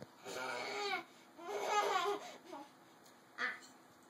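Playful, wordless vocal sounds from children, in the babbling and laughing kind: two drawn-out sounds with a wobbling pitch in the first half, then a short one near the end.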